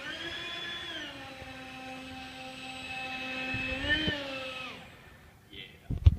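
Small model hovercraft's motor and propeller whining at a steady pitch. The pitch rises briefly near the start and again about four seconds in, then the whine winds down and fades out about five seconds in.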